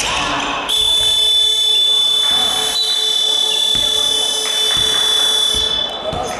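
A basketball game-clock buzzer sounds one long, steady electronic tone of about five seconds, starting under a second in, as the clock reaches zero to signal the end of the quarter. A ball is bouncing on the hardwood just before it starts.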